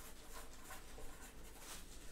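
Faint scratching of a pen writing a name by hand, in short quick strokes.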